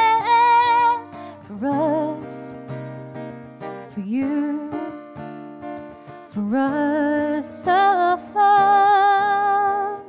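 A woman singing long held notes with vibrato, sliding up into several of them, over a strummed acoustic guitar. The song eases off in the middle and rises again near the end.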